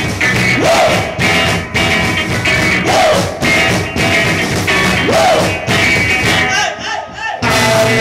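Live rock band playing loudly, with electric guitar over a steady beat and a rising glide about every two seconds. Near the end the band breaks off briefly, then comes back in at full volume.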